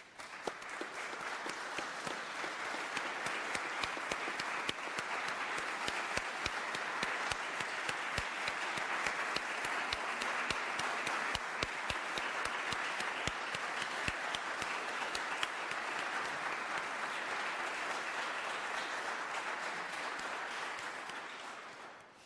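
Audience applauding: many hands clapping steadily for about twenty seconds, then dying away near the end.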